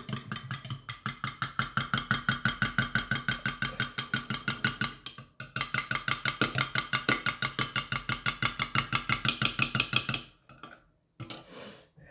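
Metal spoon stirring a soapy, oily liquid briskly in a glass measuring jug, clinking and scraping against the glass about six strokes a second. There is a short break about five seconds in, and the stirring stops about ten seconds in.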